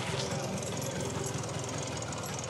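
Small motor scooter engine running with a fast, steady low putter as the scooter rides up.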